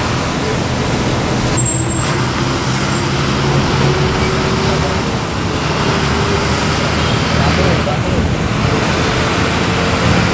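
Steady engine hum and road noise heard from inside a moving bus in city traffic, with people's voices in the background.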